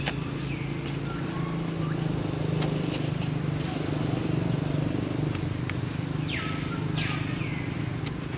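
Steady low engine hum, like a motor vehicle idling, with a few short high squealing calls that fall in pitch from young long-tailed macaques.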